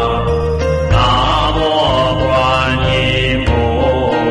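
Buddhist mantra chanting set to music: a sung, chanted melody over sustained low accompaniment notes.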